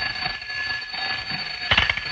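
An electric bell ringing continuously with a rapid metallic rattle.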